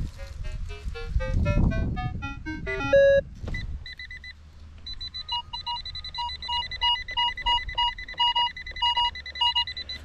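Electronic beeps from metal detecting gear. For the first three seconds a run of beeps climbs steadily in pitch over a low rumble of handling noise. From about four seconds in comes a steady electronic tone broken by short beeps that repeat in a regular pattern.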